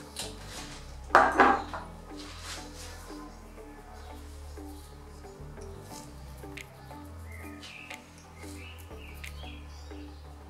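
Background music over seasoning being shaken from a small glass spice jar onto vegetables in a clay baking dish, with a brief loud clatter about a second in.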